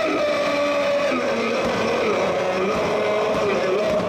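A large crowd of football supporters chanting in unison, singing a slow melody with long held notes.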